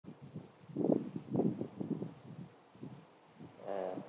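Handling noise from a handheld microphone: a few soft, irregular rubbing bumps in the first two seconds. A voice begins just before the end.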